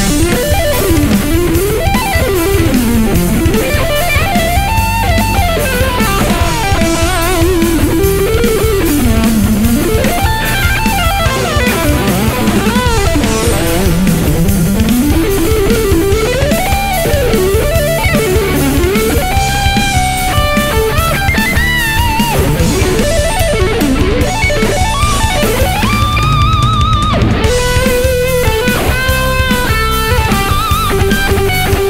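Distorted electric guitar playing a fast heavy-metal lead, runs sweeping up and down and held high notes with wide vibrato, over a backing with a steady beat.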